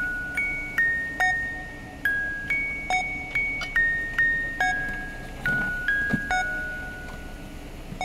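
Background music: a melody of single struck, bell-like notes, about two a second, each ringing and fading. The notes stop shortly before the end, leaving the last one dying away.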